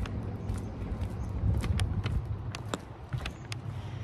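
A low, steady rumble with scattered light clicks and knocks: footsteps and phone handling while walking along a wooden dock.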